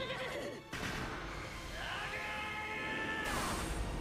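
A strained, drawn-out cry from an anime character's voice: a short falling cry near the start, then a longer one that rises and is held for over a second before breaking off, with faint background music underneath.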